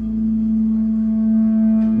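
Live band sustaining a held chord between sung lines: one steady ringing note with its overtones, and a faint tap near the end.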